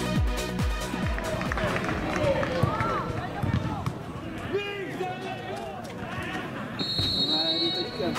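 Electronic dance music with a steady kick drum fades out in the first second and a half, giving way to live pitch sound of football players shouting to each other. Near the end comes a referee's whistle blast of about a second, stopping play for a foul.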